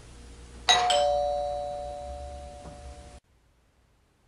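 Two-tone ding-dong doorbell chime: a higher note struck, then a lower one about a quarter-second later, both ringing and fading until they cut off about three seconds in.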